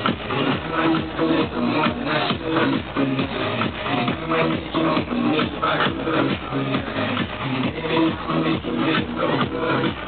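Electronic dance music from a DJ set, played loud with a steady beat of about two pulses a second.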